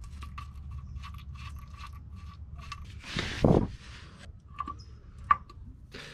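Faint clicks of small metal bolts and parts being handled, with one louder scrape about three seconds in, over a steady low hum.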